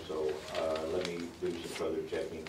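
A man speaking; the words are not made out.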